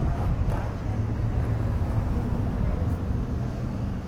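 Outdoor urban street ambience: a steady low mechanical hum with faint chatter of passing pedestrians.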